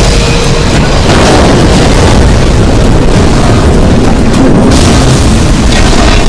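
Film sound effects of a multi-vehicle crash: a tanker truck sliding and overturning into cars, heard as a loud, dense, continuous rumble with deep booming.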